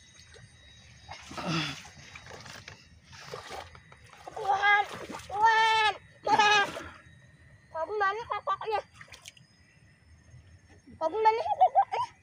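A child wading through shallow muddy paddy water, with splashing, and the child's high-pitched wordless cries in short bursts through the middle and near the end.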